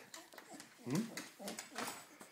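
A dog's claws clicking on a hardwood floor as it moves about excitedly, with a short questioning 'hmm?' from a person about a second in.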